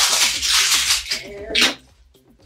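Loud rustling while a pair of shoes is fetched and handled, a long burst followed by a short one near the end, over quiet background music.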